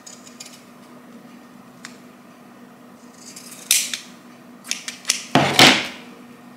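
Fabric shears cutting through cloth: a few faint snips and blade clicks, then louder cuts and handling noise in the last two seconds, the loudest just before the end.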